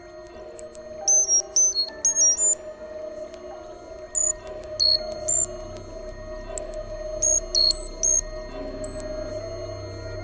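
Experimental electronic noise music from a Buchla synthesizer: a fast stream of short, very high-pitched bleeps jumping at random between pitches over a steady droning tone. A low hum comes in about halfway through and grows stronger near the end.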